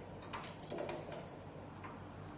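Faint light clicks and taps from a mini-split indoor unit's plastic front cover being handled, over a low steady hum.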